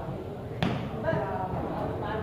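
A single sharp smack of a hand striking a volleyball about half a second in, over a background murmur of spectators' voices.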